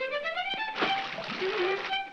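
Early-1930s cartoon orchestral score: a note slides upward, then about a second of hissing, splash-like noise plays under held high notes.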